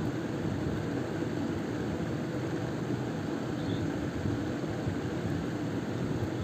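Steady background noise: an even low rumble and hiss with no distinct events.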